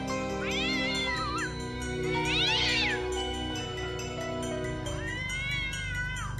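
A cat meowing three times, each a long rising-and-falling call of about a second, over sustained background music.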